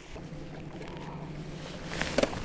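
Wind and water noise around a small aluminium fishing boat on open water, with a steady low hum underneath.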